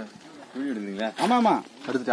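Speech only: a voice saying two short phrases, the same kind of repeated calling heard just before and after.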